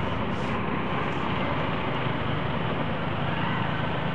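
Motorcycle and scooter engines idling in stopped, jammed traffic: a steady low engine hum under an even hiss of traffic noise.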